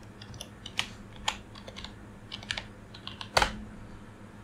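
Keystrokes on a computer keyboard as a password is typed: a dozen or so scattered key clicks, with one harder strike about three and a half seconds in.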